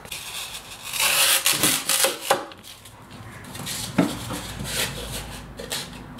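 Blocks of dry floral foam being handled and pushed into a plastic bucket: a scratchy rubbing of foam against plastic about a second in, a knock near four seconds, then lighter rustling.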